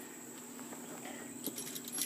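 Crickets giving a steady high drone in the background. Faint metallic clicks and short rattles of loose screws being handled come about a second and a half in and again near the end.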